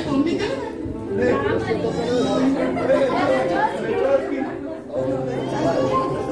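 Chatter: several people talking at once.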